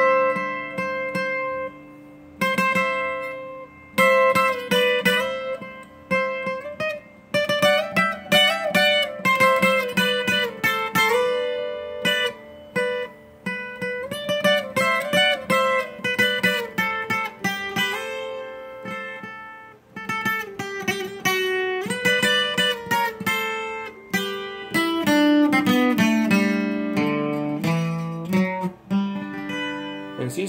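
Twelve-string acoustic guitar playing a slow bolero intro: plucked single-note melody lines with sliding notes, broken by struck chords, in short phrases with brief pauses between them.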